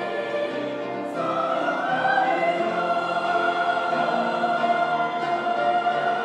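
Mixed church choir singing with piano accompaniment; about a second in, the voices swell into a louder phrase of long held notes.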